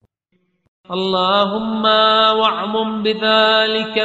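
About a second of silence, then a man's voice chanting an Arabic supplication in long, held melodic notes with small ornamental bends.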